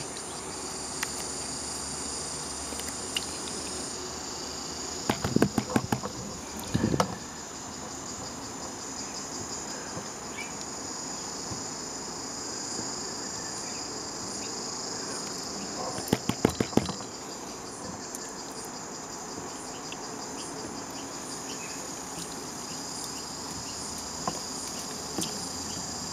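A steady, high-pitched insect chorus runs throughout. Short bursts of clicks and knocks break in around five to seven seconds in and again around sixteen seconds in.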